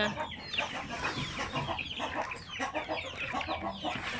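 A flock of chickens clucking, many short calls overlapping throughout.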